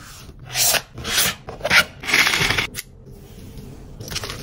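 Hands folding and pressing a white cardboard mailer box into shape, with about four scraping rubs of palms and card sliding against card in the first three seconds, then quieter handling near the end.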